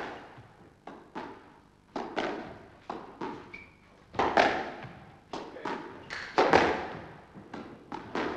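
Squash ball being volleyed back and forth in a fast rally: sharp hits of racket on ball and ball on the front wall, often two close together, about once a second, each ringing briefly in the court.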